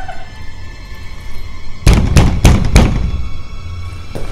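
A low, ominous horror-score drone, then about two seconds in four loud bangs in quick succession, about three a second: a hand pounding on a door that will not open.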